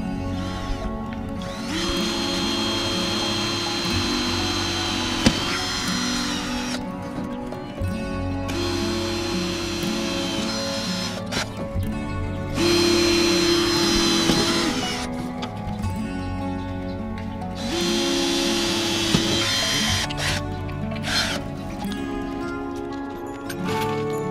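Cordless drill boring holes through a metal caravan trim strip laid on a wooden board: several runs of a few seconds each with a steady high whine, stopping briefly between holes.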